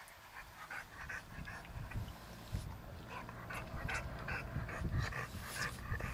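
A dog panting in quick, even breaths, about three a second.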